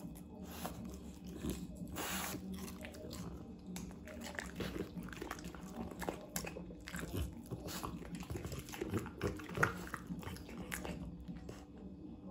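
French Bulldog biting and chewing strips of raw red bell pepper, giving irregular wet crunches and mouth smacks, with the loudest crunch a little before ten seconds in.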